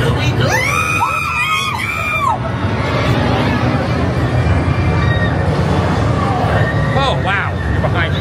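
Shrill, wavering screams with rising and falling pitch, from about half a second in to just past two seconds, with a shorter cry near the end, over a steady low rumble of crowd hubbub.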